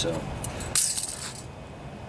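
A set of steel feeler gauge blades jingling briefly against each other, a bright metallic rattle lasting about half a second, starting under a second in, as the gauge is taken away from the engine's ignition coil.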